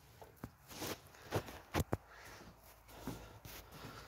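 Faint footsteps and handling noise: a scatter of light knocks and clicks over a soft rustle, with two sharp clicks close together just before two seconds in.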